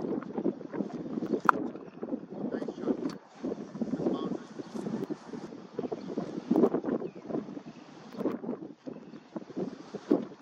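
Wind buffeting the microphone in uneven gusts, with a few faint knocks or clicks.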